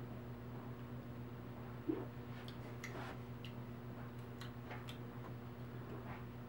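Quiet room with a steady low hum, a soft swallow of beer about two seconds in, and a few faint scattered clicks.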